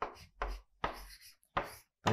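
Chalk writing on a blackboard: four short, sharp strokes of the chalk tapping and scraping across the board, about half a second apart.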